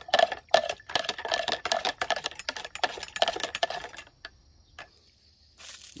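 A thin metal rod stirring liquid in a plastic backpack-sprayer tank: quick, irregular clinks and scrapes against the tank wall for about four seconds, then it stops. A brief hiss just before the end.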